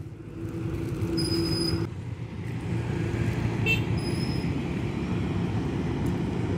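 A low, steady engine rumble, with two brief high-pitched tones over it.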